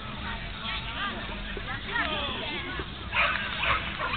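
A dog barking in a series of short, high barks, the two loudest coming near the end, over the murmur of voices from the crowd.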